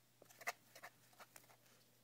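Faint handling sounds of craft materials: a few small clicks and taps, the sharpest about a quarter of the way in, with lighter ones following over the next second.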